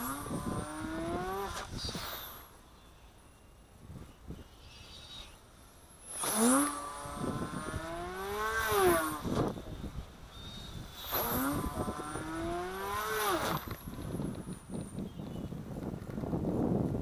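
High-powered electric RC airplane making fast low passes: the motor and propeller whine swells and rises in pitch as it approaches, then drops sharply as it goes by, three times, with a quieter gap between the first and second pass.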